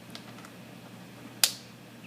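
A socket on a digital torque wrench being fitted onto a small-engine flywheel nut: a few faint metal ticks, then one sharp metal click about one and a half seconds in that rings briefly.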